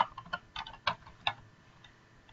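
Computer keyboard being typed on: a quick run of key clicks that dies away after about a second and a half.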